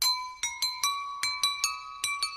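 Outro jingle: a light melody of high, bell-like chiming notes, about five a second, each ringing on briefly.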